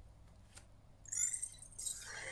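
EMO desktop robot pet making short, high electronic chirps about a second in, after a faint click.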